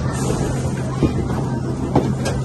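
Steady arcade game-room din with a constant low machine hum, broken by two sharp knocks about a second apart.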